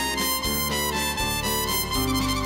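Instrumental interlude of a romance in waltz time, played by a live band: a sustained melody over bass notes that change about every half second.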